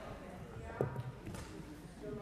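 Faint murmur of members' voices in a parliamentary chamber, with a soft knock near the middle.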